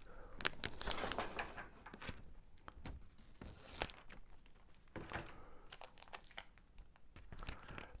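Plastic packing tape being handled: pulled, crinkled and snipped with scissors, giving faint, irregular crackles and clicks.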